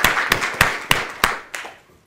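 Audience applauding, a few sharp individual claps standing out over the dense clapping, which dies away near the end.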